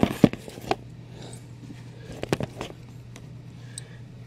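A few sharp knocks and clicks of handling as a camera is set down and steadied beside a cardboard statue box, the loudest at the very start, over a low steady hum.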